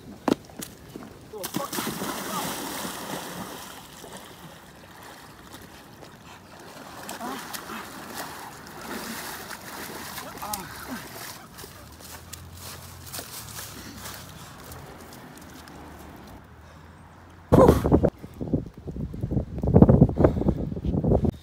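A person wading into a lake, with water splashing and sloshing around his legs. Near the end comes a much louder burst of non-word vocal sounds close to the microphone.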